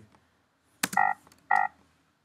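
A click, then two short electronic beeps about half a second apart, each a steady tone.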